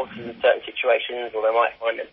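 A man talking, speech only, in continuous phrases.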